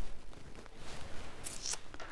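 Faint rustling and handling of fabric cushions, with a couple of brief hissy rustles near the end.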